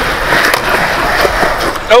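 Skateboard wheels rolling on smooth concrete: a steady rumble with a few light knocks.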